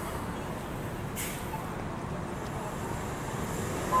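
City street traffic with a city bus at the stop, a steady low rumble, and a brief hiss of air about a second in, the release of the bus's air brakes.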